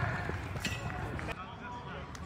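Distant shouts of football players with a couple of sharp knocks of the ball, about two-thirds of a second and a second and a third in.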